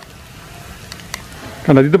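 Shallots, garlic and curry leaves frying in oil in a wok: a soft, steady sizzle with a few faint crackles.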